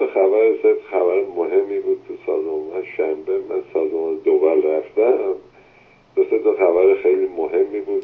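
A caller speaking over a phone line: narrow, thin telephone-quality speech with a steady faint tone and low hum behind it, pausing briefly twice.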